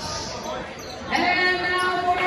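Voices in a large gym. About a second in, singing starts with a held note and then steps in pitch, echoing in the hall.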